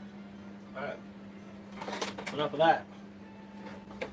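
Speech: a few short spoken words, over a steady low hum.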